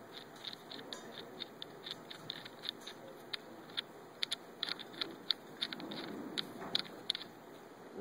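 Small metal nuts being threaded by hand onto a wheel hub's studs: faint, irregular light clicks and ticks of metal on metal, with a soft rustle of handling.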